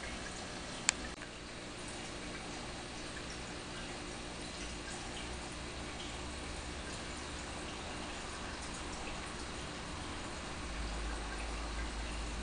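Steady trickling and bubbling of a saltwater aquarium's water circulation. A single sharp click comes about a second in.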